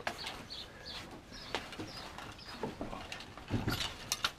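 Small birds chirping, short high calls repeated about eight times over the first two and a half seconds. A few sharp clicks and a louder burst of handling noise near the end, from hands working through a mesh bag of small objects.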